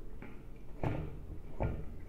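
Two short knocks, about a second in and again near the end, as screws are set by hand into the mounting holes around the radio on a reflector dish, with light handling noise between.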